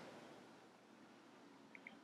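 Near silence: room tone, with two faint short ticks near the end.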